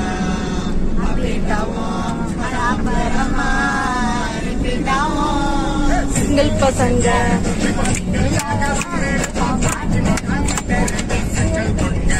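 Children singing a song inside a moving car, with a steady low rumble from the car underneath.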